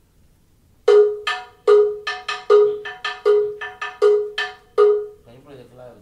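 Handheld bongo bell (campana, a cowbell) struck with a stick, playing the bongocero's bell pattern, which follows clave. A strong, ringing open stroke falls on each beat, with lighter, thinner strokes in between; it starts about a second in and stops after about four seconds.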